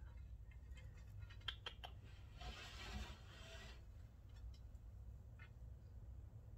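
Faint clicks, then a glass sliding door of a wooden reptile vivarium scraping along its track for about a second as it is pushed open, over a low hum.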